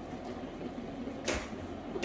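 Steady low fan hum inside a small metal-walled kitchen, with one short brushing rustle a little past halfway.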